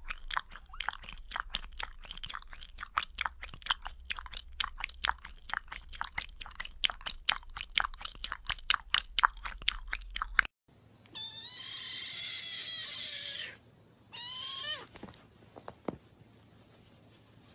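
Cats licking another cat's fur up close: a rapid run of short wet licking sounds, about five or six a second, for about ten seconds. After a break, a cat meows twice, a long wavering meow and then a shorter one falling in pitch.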